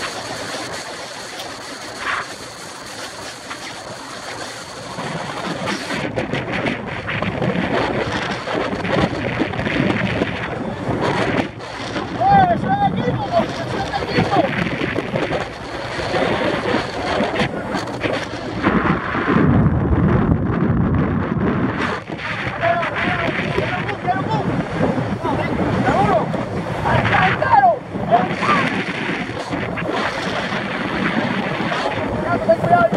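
Wind buffeting the microphone and road noise from a moving car, with indistinct voices now and then.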